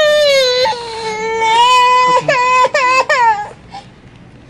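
A baby or toddler crying loudly close to the microphone: long, high cries with a few short breaks, stopping about three and a half seconds in.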